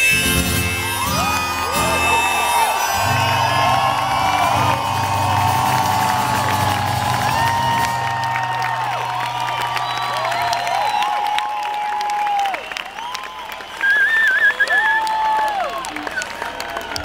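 The final strummed chords of an acoustic guitar ring out and fade while a large festival crowd cheers and whoops. Near the end a loud, wavering whistle rises from the crowd as the cheering carries on.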